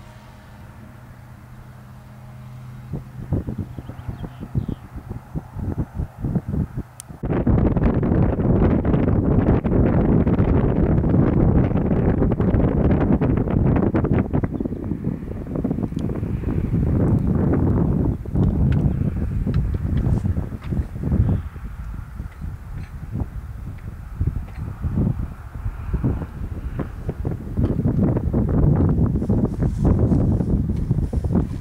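Wind buffeting the microphone: gusty low rumble starting about three seconds in and turning much louder and steadier at about seven seconds, then rising and falling in gusts. A faint steady engine drone fades out in the first couple of seconds.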